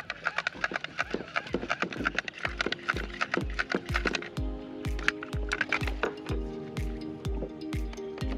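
Background music with a steady kick-drum beat of about two and a half beats a second and crisp percussion; held chords come in about four seconds in.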